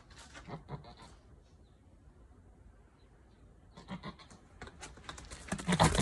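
Saanen-mix goat giving short, low bleats, with scuffling and clicks close to the microphone building up in the last couple of seconds. It ends in a loud knock and jolt as she charges at the phone.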